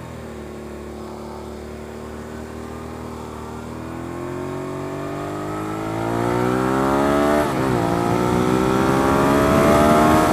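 Suzuki SV650S V-twin engine accelerating hard, its note holding then rising steadily, with a brief dip at a gear change about seven and a half seconds in before it climbs again.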